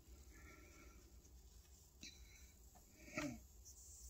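Near silence: room tone with faint rustling as hands work in hair to fit a hair slide, a small click about two seconds in, and a short low vocal sound just after three seconds.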